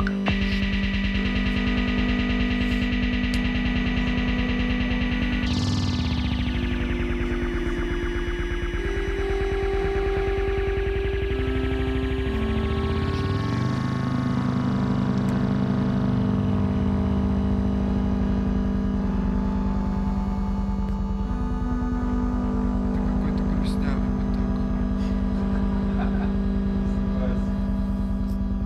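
Electronic synthesizer drone: sustained low notes that shift in pitch a few times, with a sweep in the upper tones that falls and then rises again around the middle.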